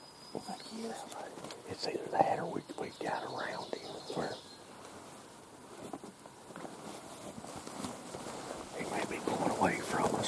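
Hushed whispering between hunters, with a quieter pause in the middle.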